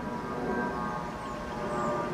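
A steady hum made of several held tones, unchanging throughout.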